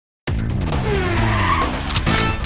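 A race car sound effect, the engine revving with gliding pitch and tyres screeching, mixed with music. It starts suddenly about a quarter second in.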